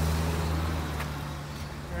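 Car engine idling close by: a steady low hum that eases off slightly after the first half-second.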